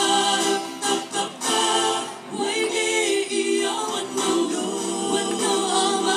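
Mixed vocal group of men and women singing a West Sumba regional song in harmony through microphones, with held chords and a brief dip a little after two seconds.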